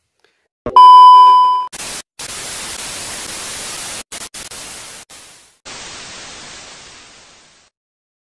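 TV test-card sound effect: a loud steady test-tone beep for about a second, then hissing static that drops out briefly a few times before going quieter and fading away.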